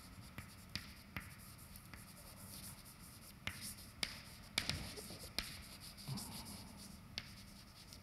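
Chalk writing on a blackboard: faint scratching broken by frequent sharp taps as the chalk strikes the board.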